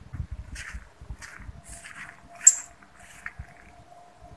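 Footsteps scuffing on gritty concrete at a walking pace, about one step every half second or so, with one sharper, louder scrape about two and a half seconds in.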